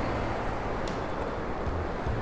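Steady wash of surf breaking and running up a sand beach, with a low steady hum underneath.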